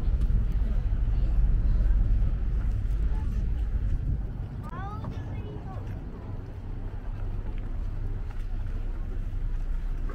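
A boat's engine rumbling low across the water, loudest for the first four seconds and then fading, under background chatter; a short high rising call sounds about five seconds in.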